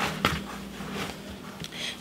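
Hands kneading bread dough in a plastic mixing bowl: two soft knocks in the first quarter second as a fist pushes down into the dough, then quieter handling sounds.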